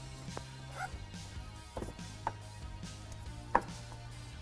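A few sharp clicks and taps, the loudest about three and a half seconds in. They come from a flat-blade screwdriver with wires taped to its end being pushed through a rubber wiring loom in a truck door jamb.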